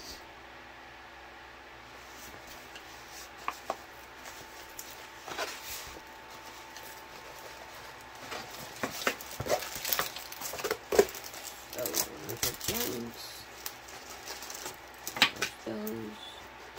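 A rolled diamond-painting canvas being handled and unrolled: rustling and crinkling of its plastic cover film and stiff backing, with scattered taps and clicks. It is quiet at first and gets busier in the second half.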